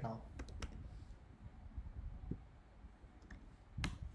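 A few sharp computer keyboard and mouse clicks about half a second in while the variable name is entered into the debugger's command window. Fainter clicks follow, then a louder single click near the end.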